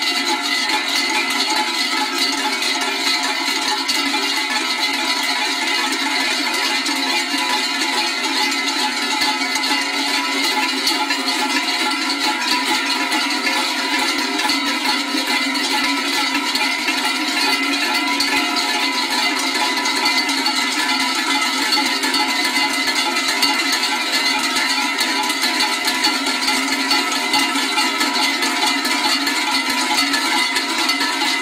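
Many large cowbells shaken together by a group of men, a dense, continuous clanging din with no pauses.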